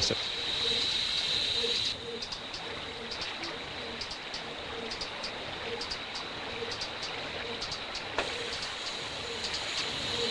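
Quiet riverside ambience: a steady hiss of flowing river water with faint, scattered high bird chirps. The sound drops in level about two seconds in.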